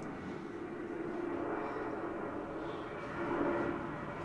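Steady distant engine rumble with a faint hum, swelling slightly a few seconds in.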